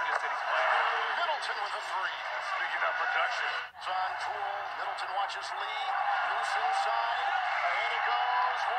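Basketball TV broadcast audio playing in the room: a commentator talking over steady arena crowd noise. It cuts out briefly and abruptly a little under four seconds in, where the footage jumps ahead.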